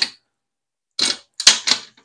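Sharp clicks and taps of a bolt and plastic split-loom tubing being handled against an aluminium plate as the bolt is fed through: one click at the start, then a quick run of about four clicks from about a second in.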